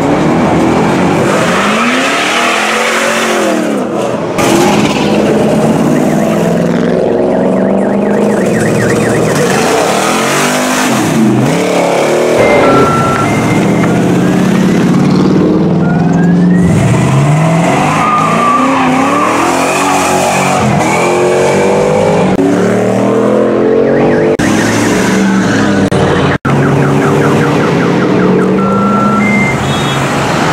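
G-body car's engine revving hard, its pitch climbing and falling again and again, with tyre squeal as the car swings sideways across the street.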